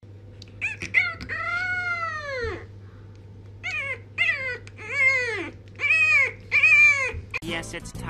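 French bulldog puppy howling in small yelps: a long call that rises and falls in pitch near the start, then a string of five shorter rising-and-falling howls. A steady low hum runs underneath.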